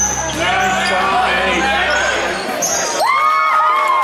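Basketball game sound in a gym: many voices and a ball bouncing on the court, with a held tone from about three seconds in.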